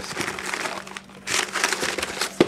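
Plastic bags and expanded-paper packing crinkling and rustling as items are handled and lifted out of a cardboard box, a little busier in the second half.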